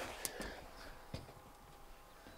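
Quiet outdoor ambience with faint rustle and two small knocks from a handheld camera being moved.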